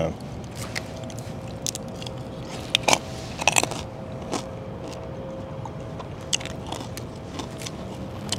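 Crunching and chewing of crispy fried pork belly (lechon kawali), heard as scattered short crackly clicks every half second or so.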